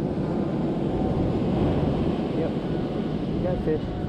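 Ocean surf breaking and washing up a sandy beach: a loud, steady, deep rushing roar.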